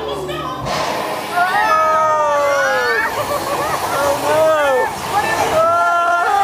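Dark-ride show audio: a rush of splashing water that starts about a second in, with cartoon character voices sliding up and down in pitch over it.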